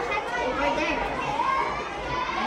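Children's voices talking indistinctly, with no clear words.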